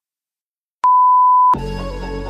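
Workout interval timer's countdown ending in one long electronic beep, about a second in, that signals the start of the next exercise. Background music starts right after it.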